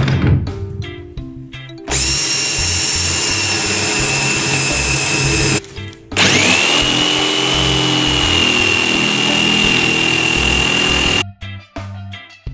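Corded jigsaw cutting plywood in two runs, each a few seconds long, with a short break between them; the motor's whine rises as it spins up at the start of the second run. A thump sounds at the very start, and background music plays underneath.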